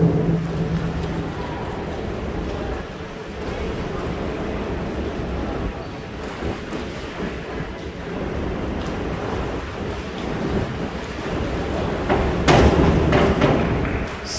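Steady splashing of swimmers in an indoor pool, then near the end a sudden louder splash as a diver enters the water off the springboard.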